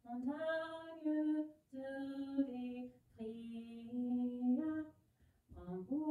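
A woman's voice singing slowly in French with no accompaniment, holding long notes that step between a few pitches, in phrases of one to two seconds with short breaths between them.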